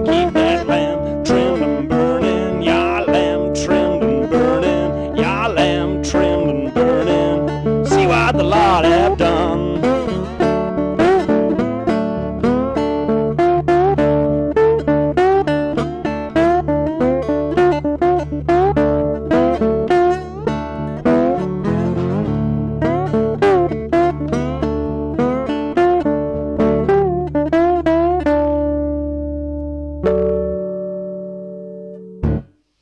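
Acoustic guitar playing a traditional gospel-blues tune, with a man singing over roughly the first ten seconds and the guitar carrying on alone after that. Near the end a last chord rings out and fades as the song finishes.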